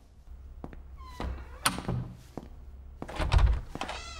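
A wooden door being pulled open, its hinges creaking with a rising squeal about a second in, among light clicks and knocks; a heavy low thunk follows about three seconds in.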